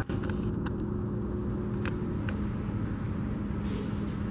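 Steady low rumble and hum of room noise, with a few faint clicks scattered through it.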